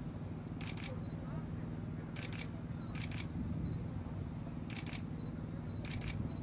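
DSLR camera shutters firing five single shots at uneven intervals, each a sharp double click, over a steady low background rumble.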